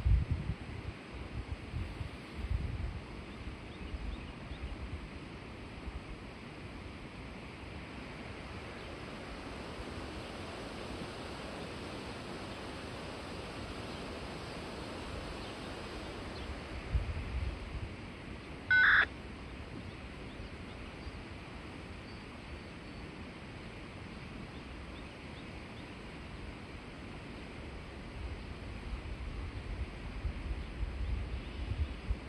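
Outdoor ambience: a steady hiss of wind, with gusts buffeting the microphone at the start, a little past halfway and near the end. One short, loud beep sounds a little past halfway.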